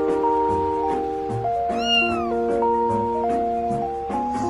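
A cat meows once, about two seconds in: a short call that rises and then falls in pitch, over background music with a steady beat.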